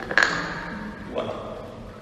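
A single sharp tap with a short ringing tail, followed by a man saying one word.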